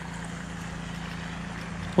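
Steady background noise: an even hiss with a faint low hum, and no distinct event.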